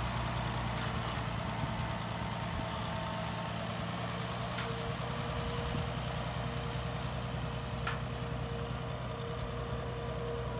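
Farm tractor engine running steadily at low speed, with a few faint sharp clicks.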